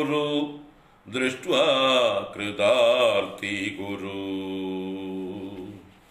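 A man chanting a Sanskrit verse in a slow, melodic recitation, with a short breath pause about a second in, ending on one long held note that stops near the end.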